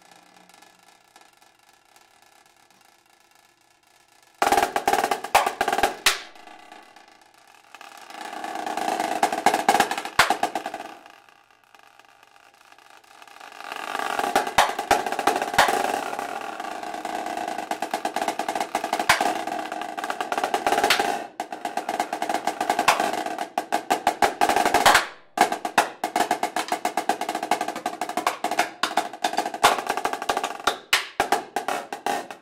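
Snare drum duet played with sticks: quiet for the first four seconds, then sudden loud strokes, a roll that swells and dies away, and from about halfway on dense rolls and fast strokes to the end.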